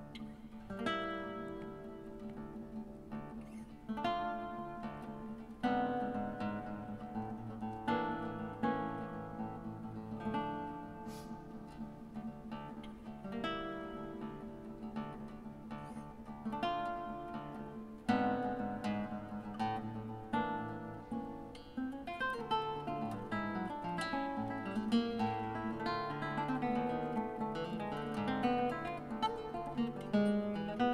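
Solo nylon-string classical guitar played fingerstyle: a flowing, quasi-improvisatory melody of plucked notes and chords that ring on, the notes coming faster in the second half.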